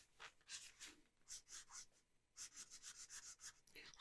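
A red felt-tip marker colouring on tracing paper, heard faintly as short scratchy strokes. A few come scattered at first, then it breaks into a quick run of back-and-forth strokes in the second half.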